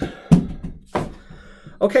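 A cardboard box being handled and pushed aside: a few hollow thumps, the loudest about a third of a second in and another about a second in.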